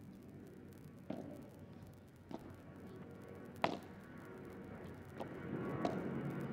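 Padel ball being struck back and forth in a rally: five sharp hits about a second apart, the loudest a little past halfway, over a faint steady background murmur.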